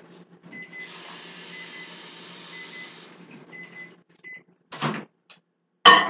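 A soft hiss for about two seconds, then sharp clunks as the over-the-range microwave's door is handled and popped open, the loudest clunk as it opens at the end.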